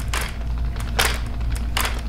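Hobie Mirage 180 pedal drive worked back and forth by hand, its chain and crank mechanism clacking: three sharp clicks about a second apart.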